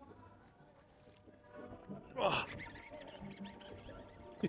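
A man's short, falling vocal exclamation, like a brief grunt or "oh", a little past halfway through; otherwise quiet.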